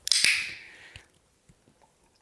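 A dog-training clicker clicking as the puppy comes in on the recall, followed by a hissy rustle that fades within about a second.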